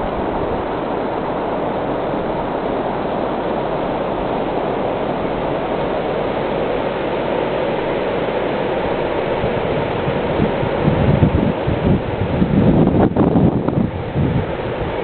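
Steady rushing of river water pouring over a weir. From about ten seconds in, gusts of wind buffet the microphone in irregular bursts.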